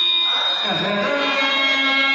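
Harmonium playing sustained notes for a devotional bhajan, its reeds holding many steady tones together, with a voice line that dips and rises briefly in the first second.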